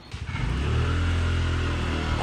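A motor vehicle's engine running close by, starting abruptly and holding loud and steady with a low hum.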